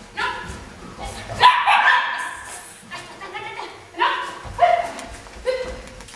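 A dog barking in short, sharp barks, several times over a few seconds.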